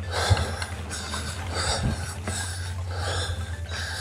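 Devinci Atlas Carbon RC mountain bike rolling over a dirt singletrack trail: tyre and trail noise over a steady low rumble, with a short knock about a third of a second in and another near the two-second mark. The rider's breathing comes through in pulses over it.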